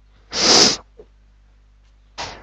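A single loud sneeze, about half a second long, followed by a faint short sound.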